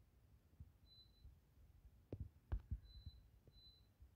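Near silence, with a few faint low thumps a little past halfway.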